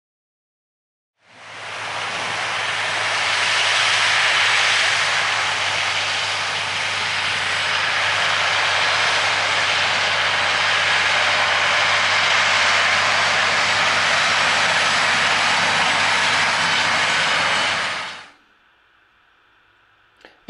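John Deere tractor working under load pulling a field cultivator: a steady low engine hum under a broad, even rush of noise. It fades in about a second in and fades out a couple of seconds before the end.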